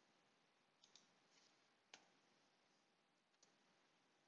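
Near silence with about four faint, short clicks of computer keys being pressed.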